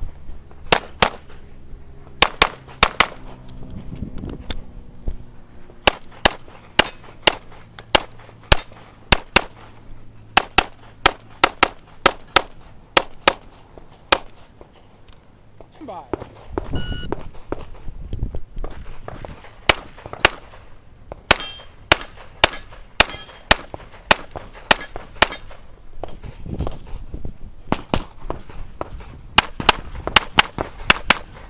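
Springfield XD(M) pistol fired rapidly in quick pairs of shots on a practical-shooting stage, with short pauses as the shooter moves between positions. There is a longer lull about halfway through.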